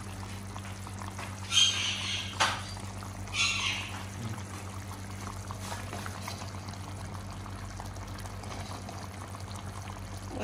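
Thick trevally fish-head curry simmering in a pot over a steady low hum, with a few short sloshes of gravy being ladled, about one and a half, two and a half and three and a half seconds in.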